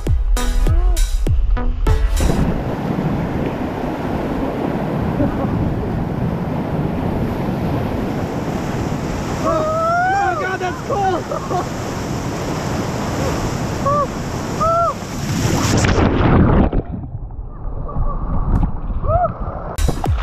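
Whitewater rushing against an inflatable raft running a rapid, steady and loud, with people yelling a few times around the middle. Near the end the sound turns dull and muffled as a wave washes over the boat-mounted camera.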